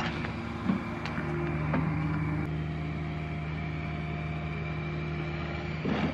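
A steady, unchanging engine or machine hum made of several constant tones, with a few faint knocks over it.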